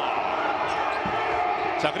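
Steady indoor basketball-arena crowd noise reacting to a dunk, with a basketball being dribbled on the hardwood court.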